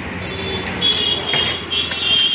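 City street traffic noise from passing vehicles, with a high-pitched steady tone coming in about halfway through, breaking off briefly and sounding again.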